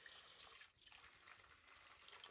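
Hot water poured from an aluminium kettle into a metal pot: a faint, steady trickle.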